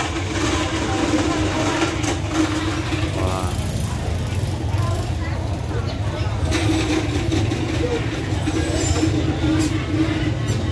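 A motorbike engine running steadily close by, a low rumble with a steady hum, with market voices in the background.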